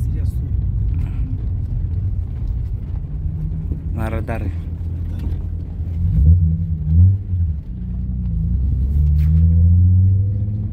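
Volkswagen Bora's engine and road rumble heard inside the cabin while driving, the engine note rising about six seconds in and again near the end as the car pulls. A brief voice sounds about four seconds in.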